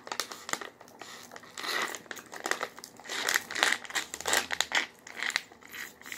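Foil Kool-Aid Jammers drink pouch crinkling as it is squeezed and crumpled in the hand, in dense, irregular crackles.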